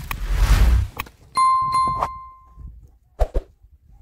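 A loud rushing noise, then a click about a second in and a bright bell-like ding struck three times in quick succession, ringing on for about a second: the sound effect of an on-screen subscribe-and-bell animation. Two short thuds follow near the end.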